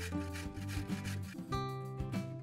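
A carrot rubbed up and down a stainless-steel box grater in steady rasping strokes, about three a second, which stop about a second and a half in. Background music plays throughout.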